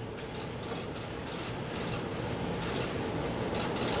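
Press photographers' camera shutters clicking in short bursts, several times, over a steady hiss of room noise.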